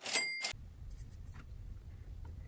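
A brief high chime lasting about half a second, then a quiet steady hum with a few faint clicks.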